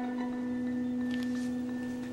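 Background score: one low sustained note held steadily, with a faint overtone above it.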